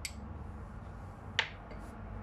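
Small hard objects knocking while kitchen utensils are handled: a light click at the start and one sharp tap about one and a half seconds in, over a low steady hum.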